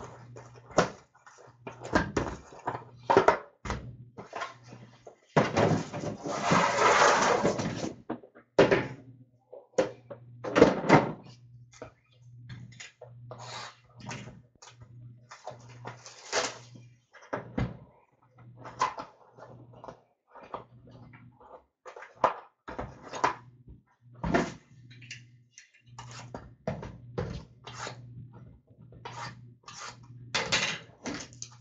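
Cardboard trading-card hobby boxes being handled on a counter: irregular taps, knocks and thuds as they are set down, turned and opened, with a denser few seconds of rustling and crinkling about six seconds in.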